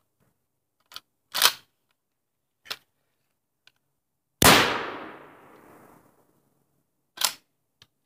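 A Winchester 12-gauge shotgun firing a Remington Express shell of number four shot: one loud, sharp shot a little past the middle, its echo dying away over about a second and a half. A few brief, softer knocks come before and after it.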